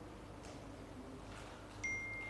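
Quiet room tone with a faint low hum in a pause between speech; near the end a single steady high-pitched electronic beep starts abruptly and holds.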